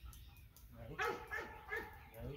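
Black retriever whining and yipping, a few short high-pitched cries starting about halfway through.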